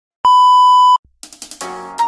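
Colour-bar test tone: one steady, high beep lasting under a second that cuts off sharply. After a short silence, music with a rhythmic beat starts.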